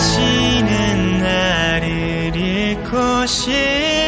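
Male pop vocalist singing long held notes that slide between pitches over a backing track, with a short break just after three seconds in.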